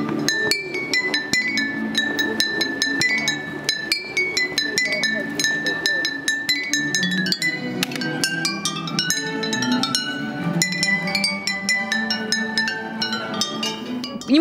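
Glass bottles filled to different levels, played as a tuned percussion instrument by striking them with small sticks: a quick melody of clinking, ringing notes, with one high note struck over and over for several seconds before the tune moves through other pitches.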